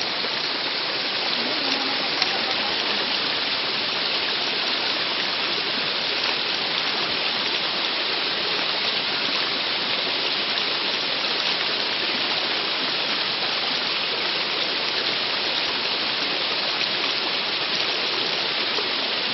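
A steady rushing noise of water.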